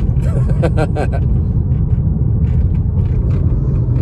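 Steady low rumble of a car's road and engine noise heard inside the moving cabin, with a man laughing over it for about the first second.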